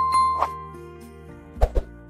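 Background music with a bell-like notification chime from a subscribe-button animation ringing out at the start and fading within about half a second. Two soft thuds follow near the end.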